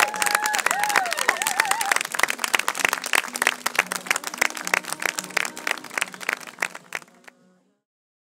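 Wedding guests applauding, many hands clapping at once, with a few cheering voices in the first second or two. The clapping thins out and fades to silence near the end.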